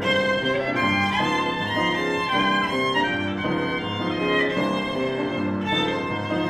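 Violin and grand piano playing classical music together: the violin carries a melody in sustained bowed notes over the piano's accompaniment.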